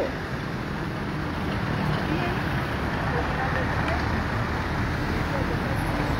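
Steady street traffic at a city intersection, with cars driving past close by.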